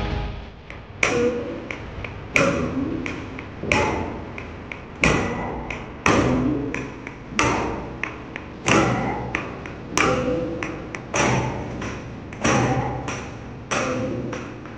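Bharatanatyam practice beat: a wooden stick (thattu kazhi) struck on a wooden block (thattu palagai) keeps time for barefoot dancers' steps. The taps are sharp and even, a strong one about every 1.3 seconds with a lighter one in between.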